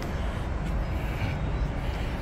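Steady low rumble of outdoor urban background noise, with no distinct events standing out.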